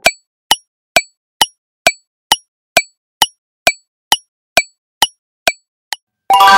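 Quiz countdown timer's ticking sound effect: short, sharp ticks, evenly spaced at a little over two a second.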